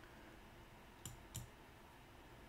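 Two short clicks of a computer mouse button about a second in, a third of a second apart, over quiet room tone.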